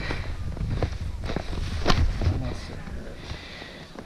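Wind rumbling on the microphone, fading after about two and a half seconds. Over it come a few sharp knocks and scrapes of ski gear in snow, the loudest a little before the middle, as a skier tries to step a boot back into a ski binding. Faint voices come in near the end.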